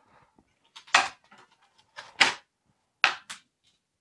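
Hard plastic parts of a Meiho VS-7055N tackle box clacking together as a side rail is fitted onto the box. There is one sharp knock about a second in, then two quick pairs of clacks.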